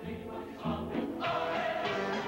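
A choir singing with instrumental accompaniment, swelling fuller and louder about a second in.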